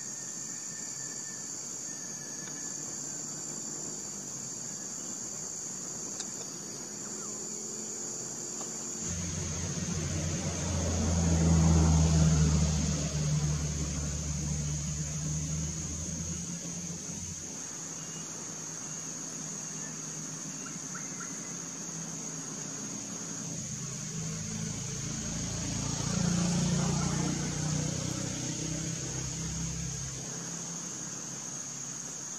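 Forest insects keep up a steady high-pitched drone. Over it, a low rumble swells and fades twice, loudest about a third of the way in and again near the end.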